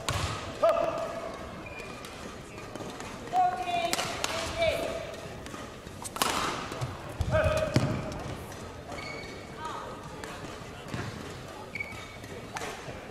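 Badminton rally on an indoor court: a few sharp racket strikes on the shuttlecock and many short squeaks of court shoes on the floor, with the reverberation of a large hall.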